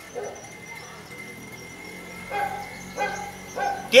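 A dog barking faintly, a few short barks in the second half.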